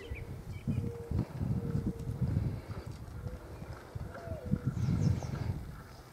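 RC rock crawler creeping over loose wooden planks: irregular knocks and thumps of its tires and chassis on the boards, with a faint motor hum coming and going.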